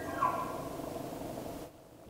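Bull elk bugling: the tail of a high, whistling call that rises to a peak and breaks off about half a second in, over a steady background hiss that drops away near the end.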